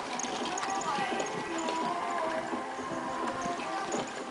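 Hoofbeats of a pony pulling a carriage at speed across a sand arena, heard under background voices and music.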